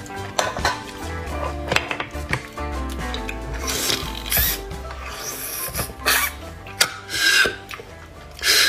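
Short, noisy slurps as marrow is sucked out of roasted bone pieces, several of them in the second half, over background music with a steady bass line.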